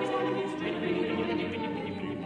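Mixed a cappella choir singing held chords in a contemporary choral piece, the voices sustaining steady notes and easing slightly in volume.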